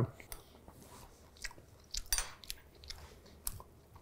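Faint mouth sounds of a person tasting pesto: a few soft clicks and smacks, with a brief louder one about two seconds in.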